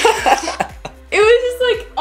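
Two people laughing hard: short breathy bursts of laughter, then a high-pitched, drawn-out laugh in the second half.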